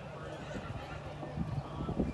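Hoofbeats of a warmblood mare cantering on arena sand: dull, irregular thuds that grow louder from about halfway through.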